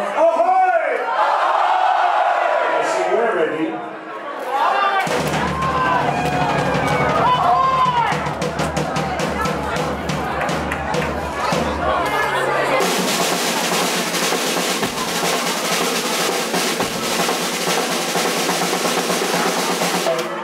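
A live dub-reggae band starting a number over a cheering crowd: shouts and whoops first, then bass guitar and drums come in about five seconds in with steady drum hits, and the full band with crashing cymbals joins past the middle.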